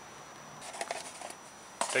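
Faint light clicks and rustles of a plastic funnel, cut from an oil bottle, being handled in an engine's oil filler neck, ending in a sharper click.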